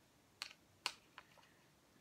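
A few faint, light clicks, about four in two seconds, as a paintbrush is swished in a plastic cup of rinse water and knocks against the cup.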